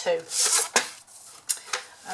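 A sheet of cardstock rustling and sliding as it is taken off a scoring board, followed by three short, sharp clicks of the card and board being handled.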